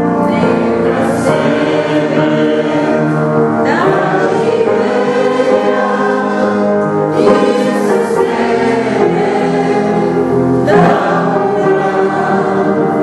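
A choir singing religious music in long held chords, a new phrase starting roughly every three and a half seconds.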